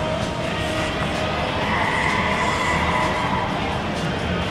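Steady din of a large exhibition hall: crowd noise with background music, and a thin high tone in the middle seconds.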